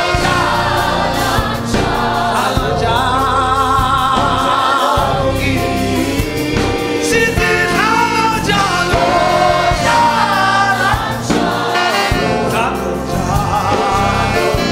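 Church congregation and microphone-led singers singing a gospel song together in chorus, with a male lead voice, over a steady low bass line.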